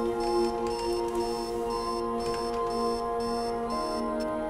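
An electronic alarm clock beeping in even pulses, about two a second, over soft sustained music.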